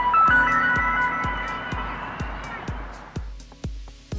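Yuneec ST-10+ transmitter's startup tones: a few held electronic notes that sound together and die away within about three seconds. They are the signal that the transmitter is ready for the aircraft to be powered on. Background music with a steady beat runs underneath.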